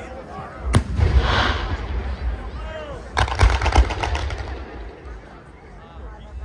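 Fireworks going off: a single sharp bang about three-quarters of a second in, followed by about a second of crackling, then a rapid string of bangs about three seconds in.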